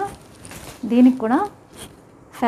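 A woman says a single word about a second in, with short rustles of saree fabric being handled around it.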